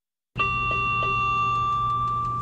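A steady, high electronic tone from hospital ICU equipment, with a low electrical hum underneath and two faint clicks. It starts about a third of a second in and holds without a break.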